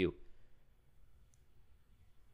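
A man's last spoken word trails off, then near silence: faint room tone with one small, high click just over a second in.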